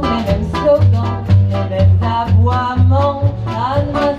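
Live acoustic band playing a swing-style song: a double bass sounds a low note about twice a second under guitar and drums, with a melody line on top.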